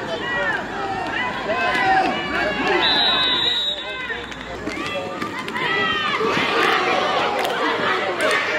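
Spectators shouting and calling out over one another at a youth football game, many voices at once. A steady, high whistle sounds for about a second, about three seconds in, as a tackle ends the play, and the voices grow busier near the end.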